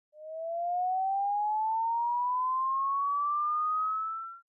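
A single pure electronic tone gliding slowly and steadily upward in pitch, fading in at the start and fading out near the end.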